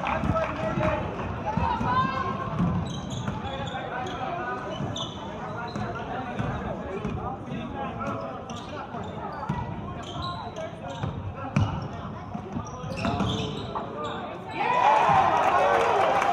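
A basketball being dribbled on a hardwood gym floor, with repeated thuds, under the steady chatter of spectators. Near the end the crowd's voices suddenly get louder, with shouting.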